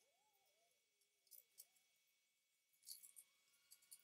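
Near silence with a few faint light clicks and clinks, a pair about a second and a half in and more near the end, as the particleboard shelf boards of a flat-pack bookcase are fitted into its side panels by hand.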